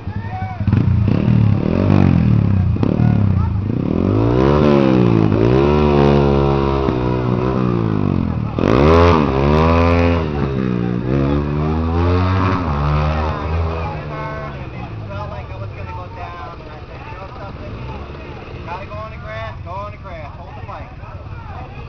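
Several small racing motorcycles passing in a group, engines revving up and dropping back again and again through gear changes. They are loudest through the middle and fade away after about fourteen seconds.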